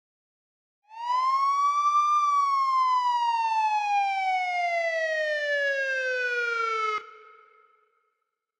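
Police siren sound effect: a single wail that rises for about a second, then falls slowly for about five seconds and cuts off abruptly, leaving a brief fading echo.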